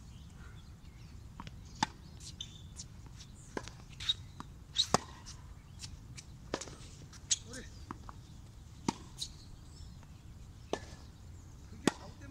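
Tennis balls struck by rackets and bouncing on a hard court during a rally: sharp pops every second or so, two of them much louder than the rest, one just before the middle and one near the end.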